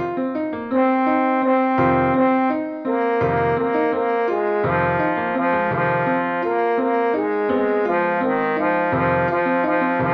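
Synthesized MIDI rendition of a male four-part choral arrangement: the baritone line, brought forward as a part-learning track, held in long sustained notes over the other voice parts, with low piano chords struck about once a second or two.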